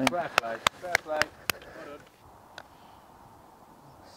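Men talking quietly over several sharp clicks, then quiet outdoor background. About two and a half seconds in, a single light tap of a putter striking a golf ball.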